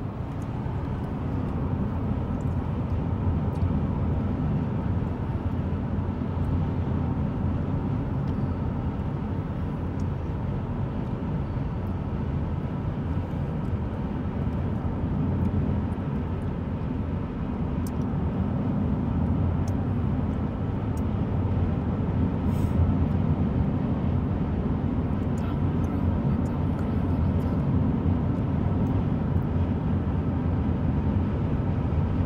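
Steady low road rumble heard inside a moving car's cabin: tyre and engine drone at highway speed, with a few faint ticks.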